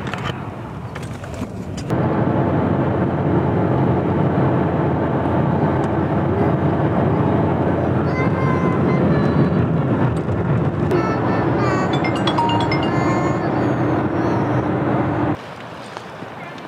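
Background music with steady held tones, coming in suddenly about two seconds in and cutting off just before the end. Before it, road noise inside a moving vehicle's cabin.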